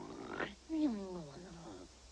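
An animated boy snoring in his sleep: a quick rising intake of breath, then a long snore falling in pitch.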